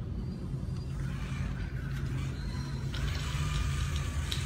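Small electric gear motors of a remote-controlled robot car with a robot arm, running over a steady low hum; the motor sound grows louder and higher about three seconds in.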